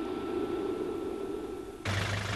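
A steady low rumbling noise, then a sudden change near the end to a car engine running with a strong, steady deep hum.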